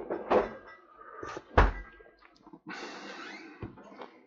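A mug of tea being handled: a few light knocks, one dull thump about a second and a half in as it meets a hard surface, then a short rustle and a small knock near the end.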